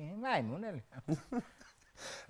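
Speech only: a man's voice in a sing-song phrase that swoops up and down in pitch, followed by a few short voiced sounds.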